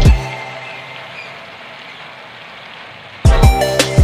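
Background music with a heavy beat stops just after the start and comes back about three seconds in. In the gap, a soy sauce mixture simmering in a frying pan gives a steady, fairly quiet sizzling hiss.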